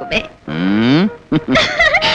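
A woman's drawn-out vocal call, about half a second long, gliding down in pitch, followed by quick speech.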